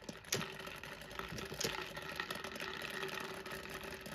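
Plastic push-down spinning top toy spinning after its plunger is pressed, with a faint steady whir and the balls inside the dome rattling and clicking, plus a few sharper clicks.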